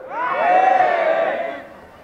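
Many voices in the audience calling out together in one drawn-out vocal response, swelling at the start and fading out after about a second and a half.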